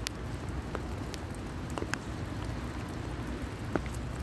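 Steady rain falling, with a scattered few single drops ticking sharply.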